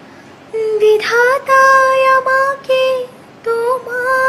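A woman singing a Bengali song alone, unaccompanied, holding long notes with short breaks; she comes in about half a second in.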